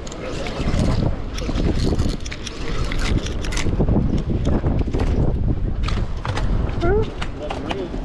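Wind buffeting the microphone in a steady low rumble, with scattered clicks and knocks, and a brief voice near the end.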